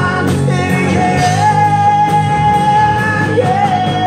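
Live rock band playing, with drums, electric guitars and bass under a singer's voice; one high note is held for about two seconds in the middle.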